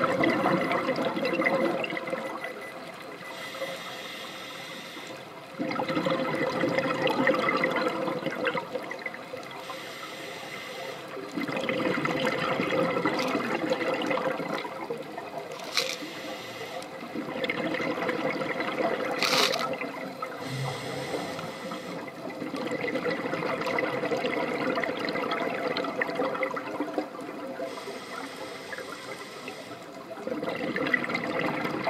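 Scuba regulator exhaust bubbles rushing past the underwater camera in bursts of a few seconds, coming back about every six seconds with the diver's breathing, with quieter stretches between. Two short sharp clicks come in the middle.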